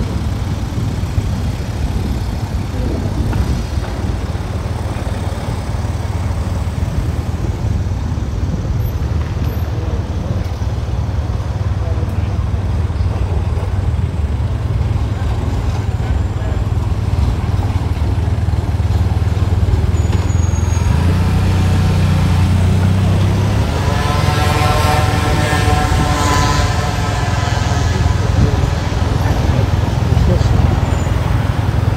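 Steady low rumble of city road traffic, cars and trams, with a heavier vehicle passing louder about two-thirds of the way through. Passers-by's voices near the end.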